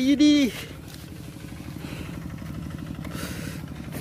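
A short spoken exclamation, then a steady low hum of a small engine running in the background.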